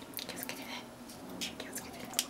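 Metal-tipped utensil scraping and stirring partly frozen cola slush inside a plastic Coca-Cola bottle. It comes as two short clusters of scratchy rasps, the first right at the start and the second about a second and a half in.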